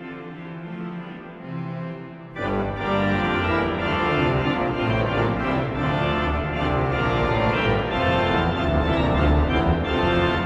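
Théodore Puget romantic pipe organ playing sustained chords. A softer passage gives way, about two and a half seconds in, to the full organ entering loudly with deep pedal bass.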